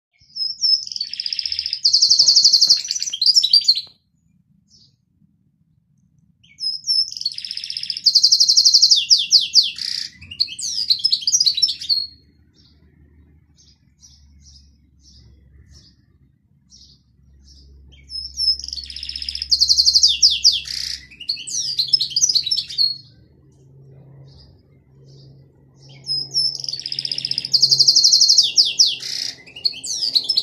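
Domestic canary singing in four bouts of song, each opening with a fast, high trill and running into quicker varied gliding notes. Short pauses come between the bouts, with a few single chirps in them.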